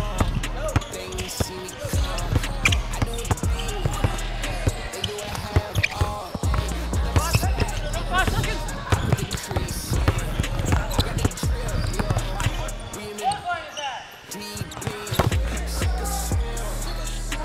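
A basketball being dribbled repeatedly on a hardwood gym floor, over background music with a deep bass line.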